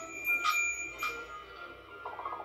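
A bright bell chime, struck twice about half a second apart, its ringing tones holding and then fading, with music underneath.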